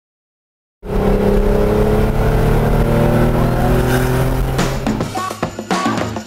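Porsche 964's air-cooled flat-six engine running as the car drives, starting about a second in, with its pitch sinking slowly as the revs come down. Near the end, music with sharp beats comes in over it.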